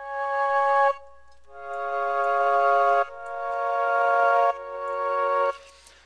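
Sampled Chinese xiao flute from Logic's EXS24 sampler, in unison mode, playing one held note and then three held chords. Each one swells in slowly and then cuts off.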